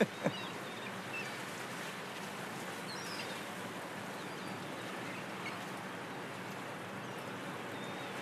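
Steady outdoor background noise with a few faint, scattered bird chirps. Two brief clicks come right at the start.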